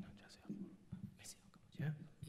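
Faint murmured voices with whispered, hissy sounds, in short broken bursts.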